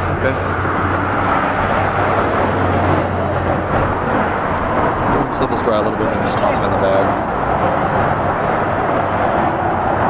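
Steady rumbling background noise with faint voices; a low hum drops away about four seconds in.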